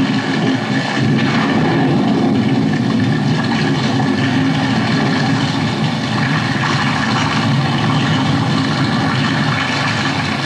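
Heavy rain falling, with water gushing from a spout and splashing into an overflowing metal tub: a steady, unbroken noise.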